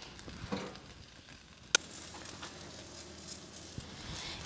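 Eggplant and tomato sizzling faintly as they roast in hot mustard oil in a kadhai, with one sharp click near the middle.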